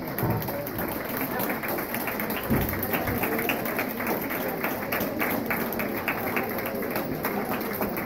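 Spectators clapping over crowd chatter, in a run of sharp claps several times a second that starts about three and a half seconds in.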